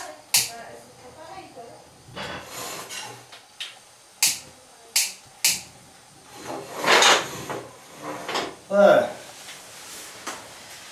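Gas burner under a steel cheese vat being turned on and lit: several sharp clicks and bursts of gas hiss as the milk is put on to heat.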